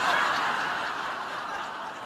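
A live audience laughing, loudest at first and slowly dying away.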